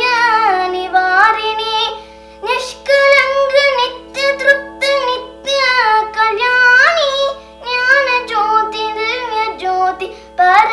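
A young girl singing a Hindu devotional bhajan in ornamented, gliding phrases over a steady drone, with short breaths about two seconds in and again near the middle and after seven seconds.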